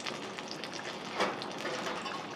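Leftover hot oil crackling and sizzling in an emptied nonstick frying pan, a steady fine crackle with a slightly louder patch about a second in.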